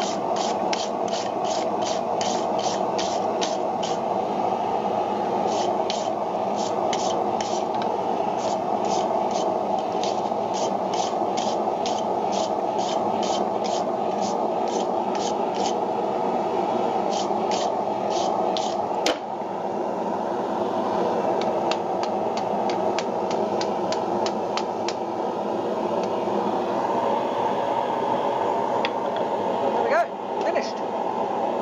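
A steel wire brush is scrubbed in quick strokes over red-hot wrought-iron tongs on the anvil, about three strokes a second, scraping off forge scale. The strokes come in runs with short pauses between them, over a steady rushing noise.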